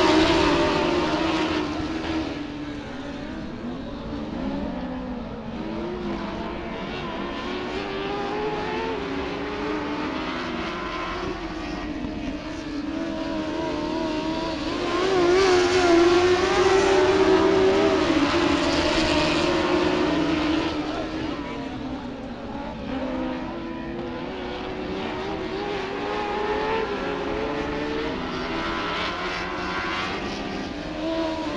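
A pack of dwarf race cars with motorcycle engines lapping a dirt oval at race speed. Several engines overlap, their pitch wavering as they rev up and lift off through the turns. The sound is loudest as the pack passes close at the start and again about halfway through.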